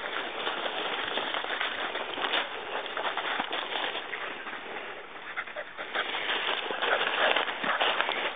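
Footsteps and a dog's paws rustling and crunching through a thick layer of dry fallen leaves, with an irregular crackle that runs on without a break.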